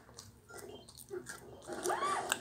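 Cartoon soundtrack played through a TV speaker: a character's startled shriek that rises and falls in pitch near the end, after a few sharp clicks.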